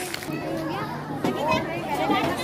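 Many children's voices chattering and calling over one another, with music playing underneath.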